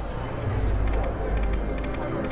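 Steady low rumble of a casino floor with faint clicks and a brief thin high tone from slot machines while a video slot's reels spin.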